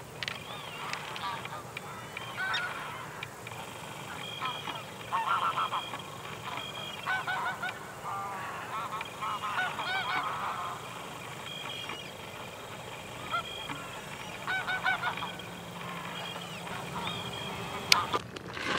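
Geese honking in scattered bursts of several calls at a time.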